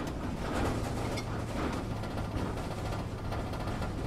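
Sound effect of a van driving: a steady engine and road drone, with a low hum that settles in about half a second in.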